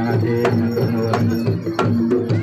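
Live Javanese jaranan gamelan music: kendang hand drums and struck bronze metallophones and gongs playing a steady, repeating rhythm, with sharp drum strokes every half-second or so.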